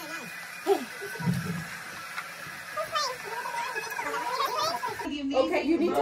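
Several people talking indistinctly in a small room, children's voices among them. About five seconds in, the voices become closer and louder.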